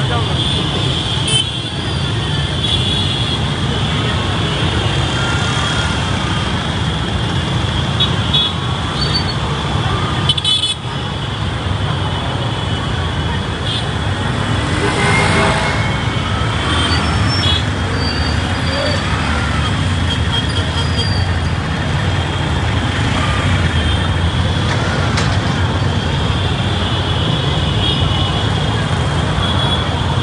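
Dense, slow-moving traffic of motorcycles and auto-rickshaws packed in a crowd: engines running steadily, horns tooting now and then, and many voices throughout.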